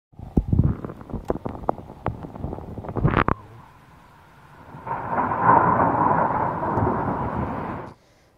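Thunder during a heavy snowfall (thundersnow): a run of sharp cracks over the first three seconds, then a short lull, then a steady rumble from about five seconds in that cuts off suddenly near the end.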